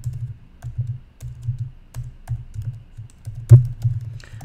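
Typing on a computer keyboard: irregular keystrokes, with one louder keystroke about three and a half seconds in.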